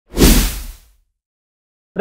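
A whoosh sound effect for a logo sting, with a deep rumble under it. It swells quickly, then fades away within the first second.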